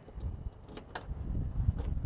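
Key working a car's trunk lock, with a few sharp clicks as the latch releases and the trunk lid opens, over a low rumble.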